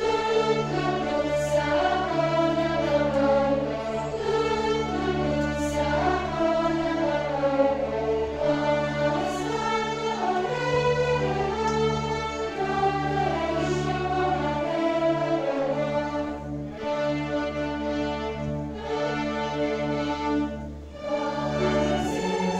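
A live string orchestra and choir performing together: violins and cellos playing a melody over steady held low notes, with the choir singing.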